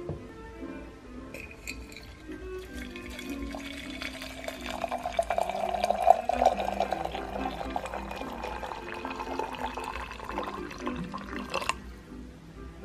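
Water being poured into a glass teapot onto loose oolong leaves. The splashing starts about a second in and grows fuller, and its tone rises as the glass fills. It stops suddenly just before the end.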